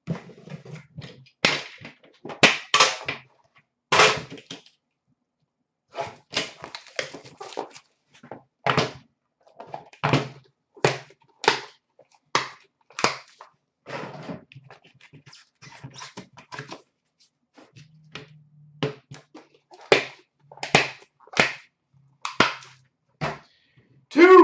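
Hands handling a metal trading-card tin and its cardboard shipping case on a glass counter: an irregular run of sharp taps, knocks and clicks, about one to three a second, as the tin is set down and its lid taken off.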